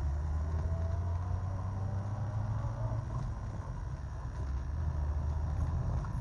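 Car engine and road rumble heard from inside a moving car's cabin: a steady low drone that eases slightly about four seconds in, then picks up again.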